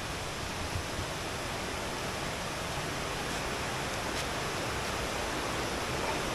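Steady rush of a shallow river running over rocks, an even hiss that grows a little louder toward the end.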